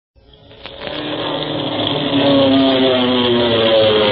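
Propeller airplane engine sound effect from an old-time radio serial's opening, fading in over about two seconds and then running steadily with a slowly sliding drone. The old recording's narrow bandwidth makes it dull and muffled.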